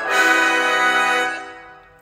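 Orchestral brass section playing a loud, sustained chord, the last of a run of held chords at the close of a musical number, fading away over the final second.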